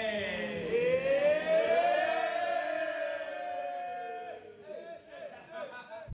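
A group of men singing or chanting one long held note together. The pitch rises over the first two seconds, holds, and breaks off about four seconds in, with shorter scattered voices after it.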